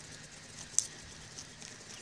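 A man chewing a sprig of sainfoin, heard as faint crunching with one sharper click a little under a second in and a few softer ticks after it, over quiet outdoor air.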